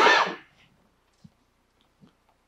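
One short, loud, expelled burst of breath from a person, like a cough, at the very start, fading within about half a second. A faint tick follows about a second later.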